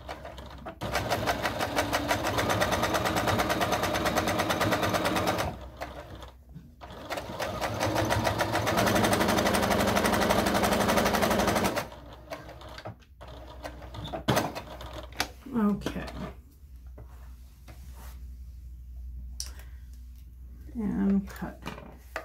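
Electric domestic sewing machine stitching a topstitch through thick fabric, a fast, even rattle of the needle in two runs of about five and four seconds with a short pause between. After that, only quieter scattered sounds.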